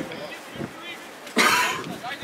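Voices calling out around a football pitch, with a loud, short cough close to the microphone about one and a half seconds in.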